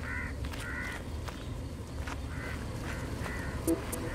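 A bird calling in four short calls, in two pairs, over faint street background. Near the end, music begins with a few picked notes.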